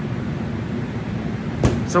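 Steady low rumble and hiss of background room noise, with one sharp click shortly before a voice begins.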